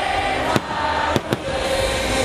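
Aerial fireworks going off in three sharp bangs, one about half a second in and two close together just after a second in, over loud festival dance music.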